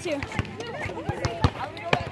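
Background voices of people talking on an outdoor court, with scattered sharp knocks at irregular intervals.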